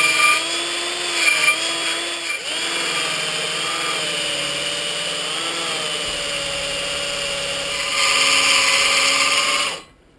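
Electric drill running a sanding-disc attachment against a rusty brake disc, sanding the rust off its surface. The motor's pitch wavers as the pad is pressed on, grows louder about eight seconds in, and cuts off just before the end.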